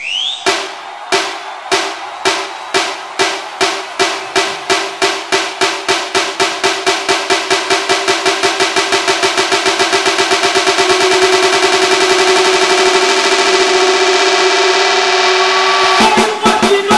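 Music: a drum struck in an accelerating roll, starting at about two strikes a second and speeding up until the strikes merge into a continuous roll about two-thirds of the way through, over a steady ringing tone.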